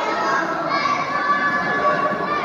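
Hall crowd of spectators, many of them children, shouting and calling out at once, a steady mass of overlapping voices.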